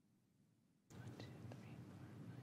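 Near silence for about a second, then faint, indistinct speech.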